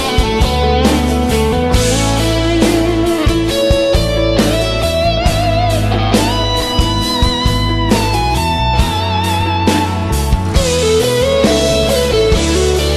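Instrumental intro of a gospel song's backing track: a lead guitar melody with vibrato over bass and a steady drum beat.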